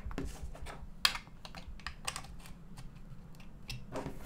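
Plastic clicks and scraping of a Kingston USB SD card reader being fitted into a laptop's side USB port, with one sharp click about a second in and lighter taps and rattles after it.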